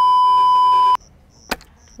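Steady electronic test-tone beep of the kind played with TV colour bars, held for about a second and cutting off sharply, followed by a single sharp click.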